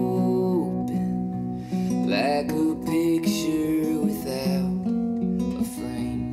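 Live acoustic guitar, capoed, playing sustained chords in an instrumental passage of a folk song, with a wordless held vocal note fading in the first second.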